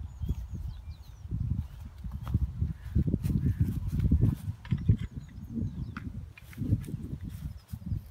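Field Marshall tractor's single-cylinder two-stroke diesel engine running at a slow idle, an uneven low thumping.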